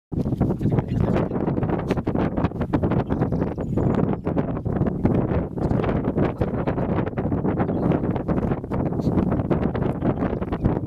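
Wind buffeting the microphone outdoors: a loud, uneven rumble with a constant crackle.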